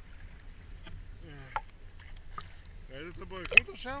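Sea water lapping and splashing against a camera held at the surface, with scattered sharp splashes. A voice speaks briefly about a second in and again near the end.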